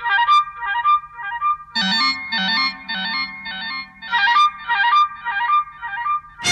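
Instrumental opening of a 1980s Hindi film song: a repeated figure of short, high, bright notes over a steady low drone, with a lower line joining about two seconds in.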